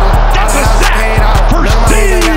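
Hip-hop backing music with deep, sustained bass notes and a steady driving beat.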